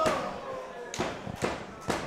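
Wrestling strikes landing in the corner: a few sharp smacks about half a second apart, including a chop to the chest, with the crowd's voices over the first moment.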